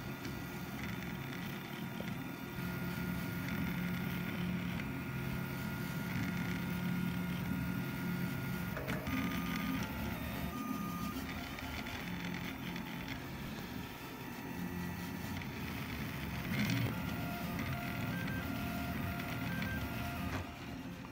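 Delta 3D printer printing: its stepper motors give thin whining tones that jump from pitch to pitch as the print head changes moves, over a steady low hum, the whole machine running quietly.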